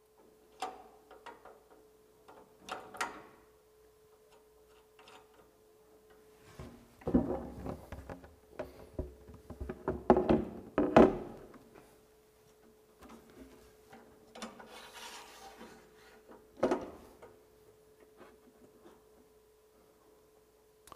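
Intermittent clunks, knocks and scraping of a large target board being handled, hung on a metal board hanger and clamped in place, in several bursts with the loudest handling near the middle. A faint steady hum runs underneath.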